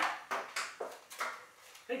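Plastic clicks and clacks of a Nerf dart blaster worked by hand, about six sharp clicks in under two seconds that grow fainter.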